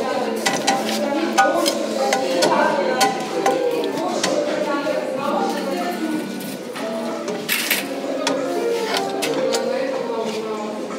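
Background music with scattered sharp clicks and clacks of frying pans knocking against each other and their display hooks as they are handled.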